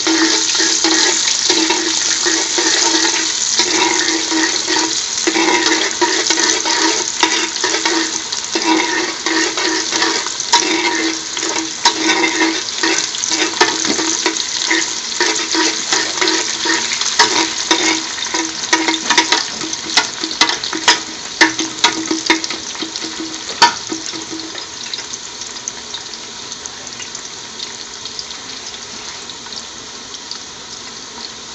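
Sliced garlic and whole spice seeds sizzling in hot oil in a metal pot, stirred with a utensil that clicks and scrapes against the pot. About 24 seconds in the stirring stops and the frying goes on more quietly.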